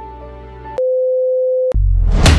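Held music chords fading, then a single steady electronic beep lasting just under a second that starts and cuts off abruptly, followed at once by loud drum-driven music.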